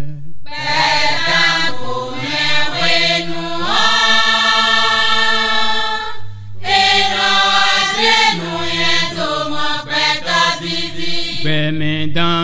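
Chanted singing: voices holding long notes over a steady low tone, with a short break about six seconds in.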